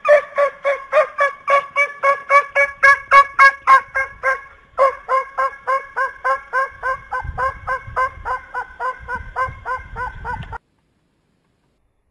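A fast, regular run of gobbling poultry calls, about four or five a second, with a short break partway through and an abrupt stop near the end.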